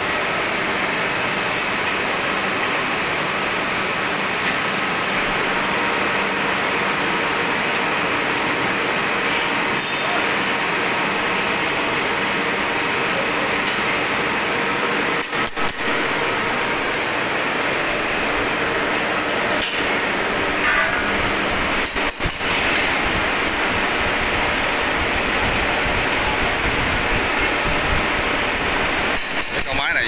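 A steady, loud rushing noise runs throughout, with a few brief metal clinks and knocks as steel tiller blades are handled and fitted onto a rotary tiller's rotor shaft.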